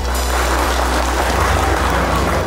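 Audience applauding at the end of a sung performance, over a low note held in the backing music.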